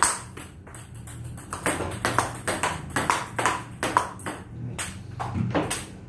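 Table tennis ball clicking back and forth off paddles and table in a quick rally, several hits a second. The hits stop briefly about a second in.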